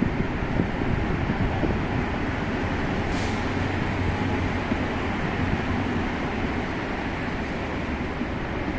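City street traffic: a steady rumble of car engines and tyres, with a brief hiss about three seconds in.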